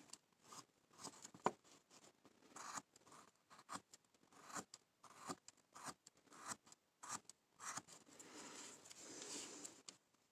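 Hand-held V-tool cutting into a basswood carving blank: a string of faint, short scraping cuts, about one a second, with a longer continuous scrape near the end.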